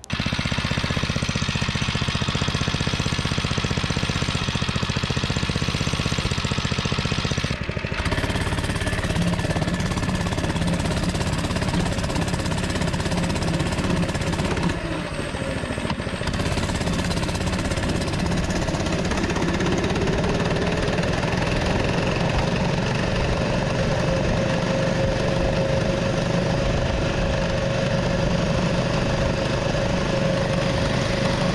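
Baja Dirt Bug mini bike's small single-cylinder engine running steadily at full throttle under a rider. The throttle stop screw is set so that it tops out at about 16 mph. There is a brief break about eight seconds in and a short dip in level around fifteen seconds.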